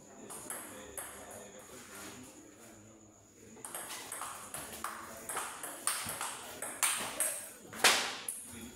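Table tennis rally: the celluloid ball clicks in quick alternation off the paddles and the table, starting about halfway through, with the sharpest, loudest hit near the end.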